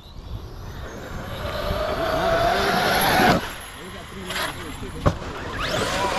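Large brushless electric RC truck accelerating, its motor whine and tyre noise rising for about three seconds, then cutting off suddenly. A single sharp knock follows about five seconds in, and another rising whine starts near the end.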